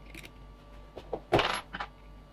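Small metal screws clinking and rattling as they are handled: a few sharp, ringing metallic clicks, the loudest about a second and a half in.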